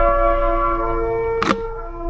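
Slow melody on a wind instrument, long held notes stepping to a new pitch every second or so. A sharp click comes about one and a half seconds in.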